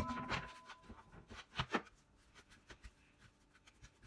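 Hands kneading and rolling bread dough on a floured cutting board: a sharp thump right at the start, then soft rubbing and pats, with two light thuds a little after one and a half seconds.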